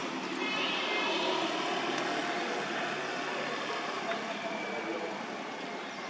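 Steady drone of a distant engine over outdoor background noise.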